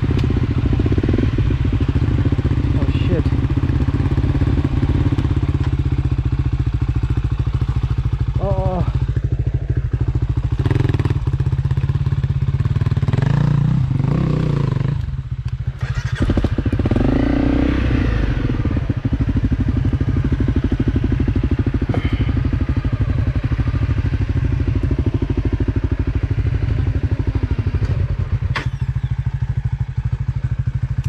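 Dirt bike engine running at low, steady revs as the bike is ridden slowly over a rough, rocky trail, with occasional knocks and clatter. The engine sound dips briefly about halfway through.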